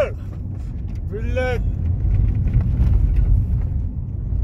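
Steady low engine and road rumble inside a moving car's cabin, with a brief voice sound about a second in.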